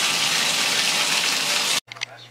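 Water running hard and steadily from a bathtub spout into the tub, drawing a bath. It cuts off abruptly near the end.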